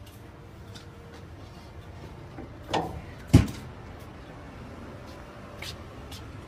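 Two thumps on a van's metal body about half a second apart, the second louder and deeper, over a low steady background.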